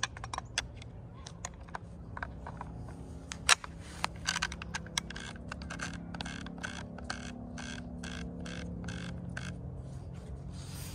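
Savage 64 takedown .22 rifle being handled and worked by hand: scattered sharp metal clicks, then a regular run of short scraping strokes about three a second from about four seconds in until near the end.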